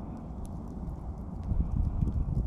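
Campfire coals burning with a few faint crackles over a low rumble that grows louder about one and a half seconds in.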